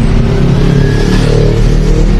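Street traffic heard from a moving cycle rickshaw: the engines of an oncoming car and motorcycles over a steady low rumble, with an engine note rising slightly about a second in.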